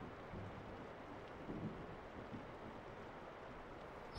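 Faint, steady hiss of rain, a background rain ambience.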